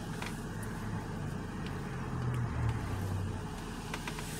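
Steady low vehicle rumble heard from inside a car cabin, swelling briefly a little past the middle.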